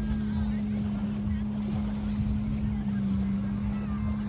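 A steady low hum runs throughout, over an irregular low rumble of wind on the microphone.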